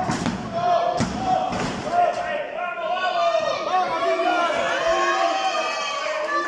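Wrestling ring canvas slapped by the referee's hand for a pinfall count, three sharp slaps about a second apart, then many spectators' voices shouting together.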